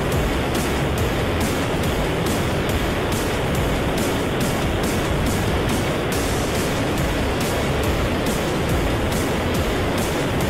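Steady engine and wind noise of a light aircraft descending to land, unchanging throughout.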